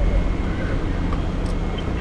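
Steady low rumble of a fire service vehicle's engine and cab, heard from inside the vehicle.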